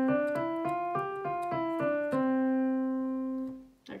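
Korg digital piano playing a five-finger exercise on the white keys from middle C: C, D, E, F, G and back down to C, about three notes a second, without repeating the top note. The final C is held for about a second and a half and then fades away.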